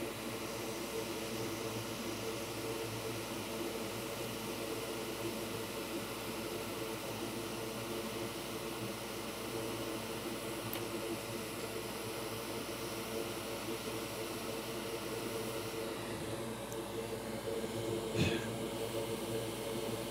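Hot air rework station blowing steadily, a continuous hiss with a faint hum, while capacitors are reflowed into place in flux. A short click near the end.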